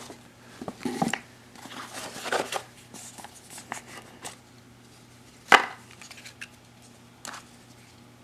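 A sealed trading-card box being opened by hand: the stiff cardboard lid lifted and the cards inside pulled out, with scattered taps, rustles and light clicks. One sharp, loud click comes about five and a half seconds in.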